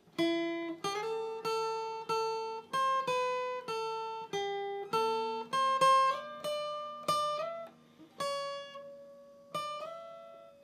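Steel-string acoustic guitar playing a lead melody slowly, one picked note at a time, about one to two notes a second, each left to ring and fade, with a few short slides between notes.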